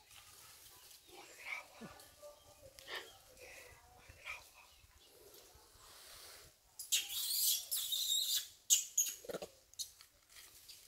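A few faint short squeaks, then, about seven seconds in, a loud burst of crackling rustle, like dry leaves and twigs being disturbed, lasting about two seconds and ending in a few sharp cracks.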